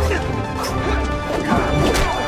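Fight sound effects from an action show: sharp hits and crashes, one about half a second in and one near the end, over dramatic background music with a pulsing low beat.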